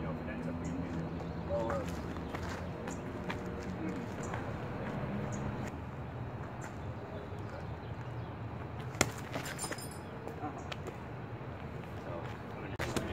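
Outdoor city background: a steady low rumble with faint voices, and a single sharp click about nine seconds in.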